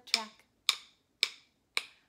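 A stick tapped in a steady beat: four sharp clicks about half a second apart, with the sung end of a line at the start.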